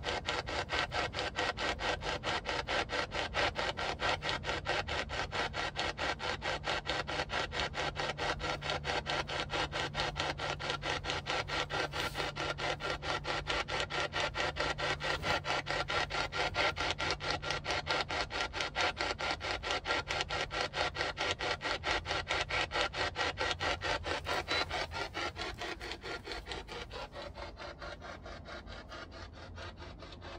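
Ghost-hunting spirit box sweeping through radio stations: a steady stream of rapid, evenly chopped bursts of static, dropping in level in the last few seconds.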